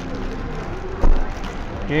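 Clear plastic bag crinkling as a boxed model car is pulled out of it, with a dull thump about a second in, over a steady low background rumble.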